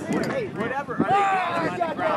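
Several voices shouting and calling out at once, overlapping, with the words indistinct.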